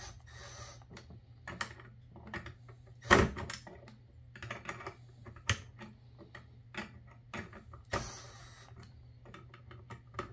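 Cordless drill-driver run in short bursts, about three seconds in and again about eight seconds in, backing out the screws of a power supply's screw-terminal block. Scattered small clicks and knocks of the bit and handling come between the bursts, over a faint steady low hum.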